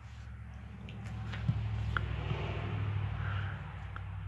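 A cat rolling on a carpeted floor with a tennis ball: soft rustling and a couple of light taps over a low steady rumble that grows louder in the middle.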